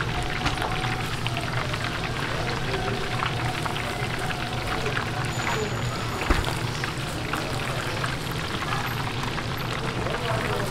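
Chicken pieces deep-frying in a vat of hot oil: a steady, dense sizzle full of fine crackling. A single sharp knock about six seconds in.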